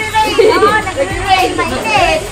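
Children's voices calling out and chattering while playing in a swimming pool.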